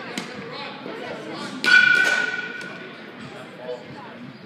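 A sudden loud clang about one and a half seconds in, with a ringing metallic tone that dies away over about a second: a pitched baseball striking metal.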